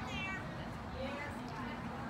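A person's brief high-pitched shout right at the start, then faint background chatter from the crowd.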